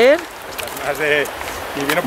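Mostly speech: a man's voice at the start and again near the end, with a quieter voice about a second in. Underneath is the steady hiss of a shallow river flowing over stones.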